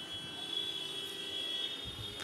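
Quiet room tone: a faint hiss with a few faint, steady high-pitched tones and no distinct sound events.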